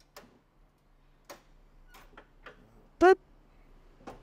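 A drop-down fridge slide being lifted back up and pushed into the truck bed, giving a few faint clicks and knocks over the first couple of seconds. About three seconds in, a man says a short "boop" as it goes home.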